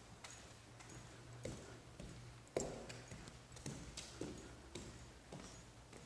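Faint footsteps of someone walking across a floor, about one step a second, over a low steady hum.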